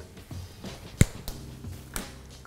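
A single sharp snap of a piece of Lindt Excellence 70% cocoa dark chocolate about a second in, with a couple of lighter clicks after it, over soft background music.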